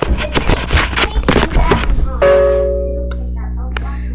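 Clicking and rustling of a camera being handled as its charger cable is plugged in, then about halfway a single held, ringing tone that fades slowly.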